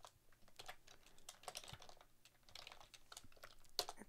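Faint typing on a computer keyboard: scattered quick key clicks.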